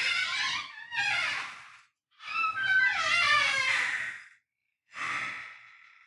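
High-pitched vocal sounds with a wavering, gliding pitch, in four stretches separated by short gaps, the last fading away near the end.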